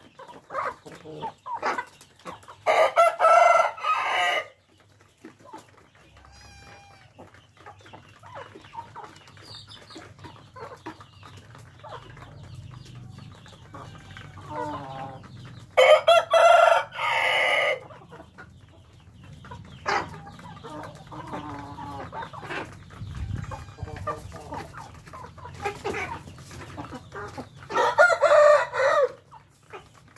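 A flock of young Vietnamese game chickens (gà chọi) clucking and calling softly as they forage. A rooster crows three times, each crow about two seconds long and the loudest sound, roughly twelve seconds apart.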